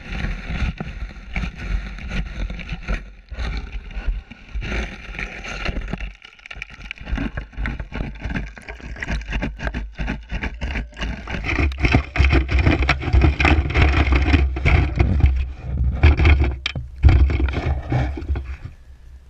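Water sloshing and splashing, with wind rumbling on the microphone and many scattered clicks and knocks; it grows louder in the second half.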